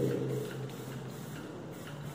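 Hand-pump pressure sprayer spraying a fine mist of liquid floor wax onto a concrete floor, a steady hiss over a constant low hum.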